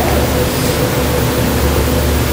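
Steady, even hiss with a low hum underneath, unchanging throughout.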